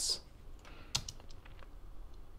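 Faint clicking of a computer keyboard: a handful of separate keystrokes, the clearest about a second in.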